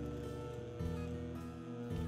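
Background music with soft sustained notes that change about every second.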